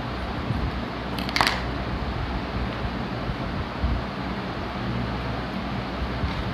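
Small scissors snipping open a ketchup sachet: one sharp snip about a second and a half in, over a steady low background hum.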